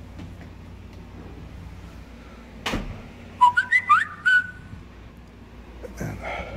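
A single knock, then about a second later a quick run of four or five short high whistle-like chirps that glide upward.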